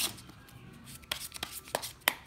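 A deck of playing cards being handled on a table just after a shuffle, as the deck is squared and cards are dealt. It gives a few light, sharp clicks and taps, about four in the second half.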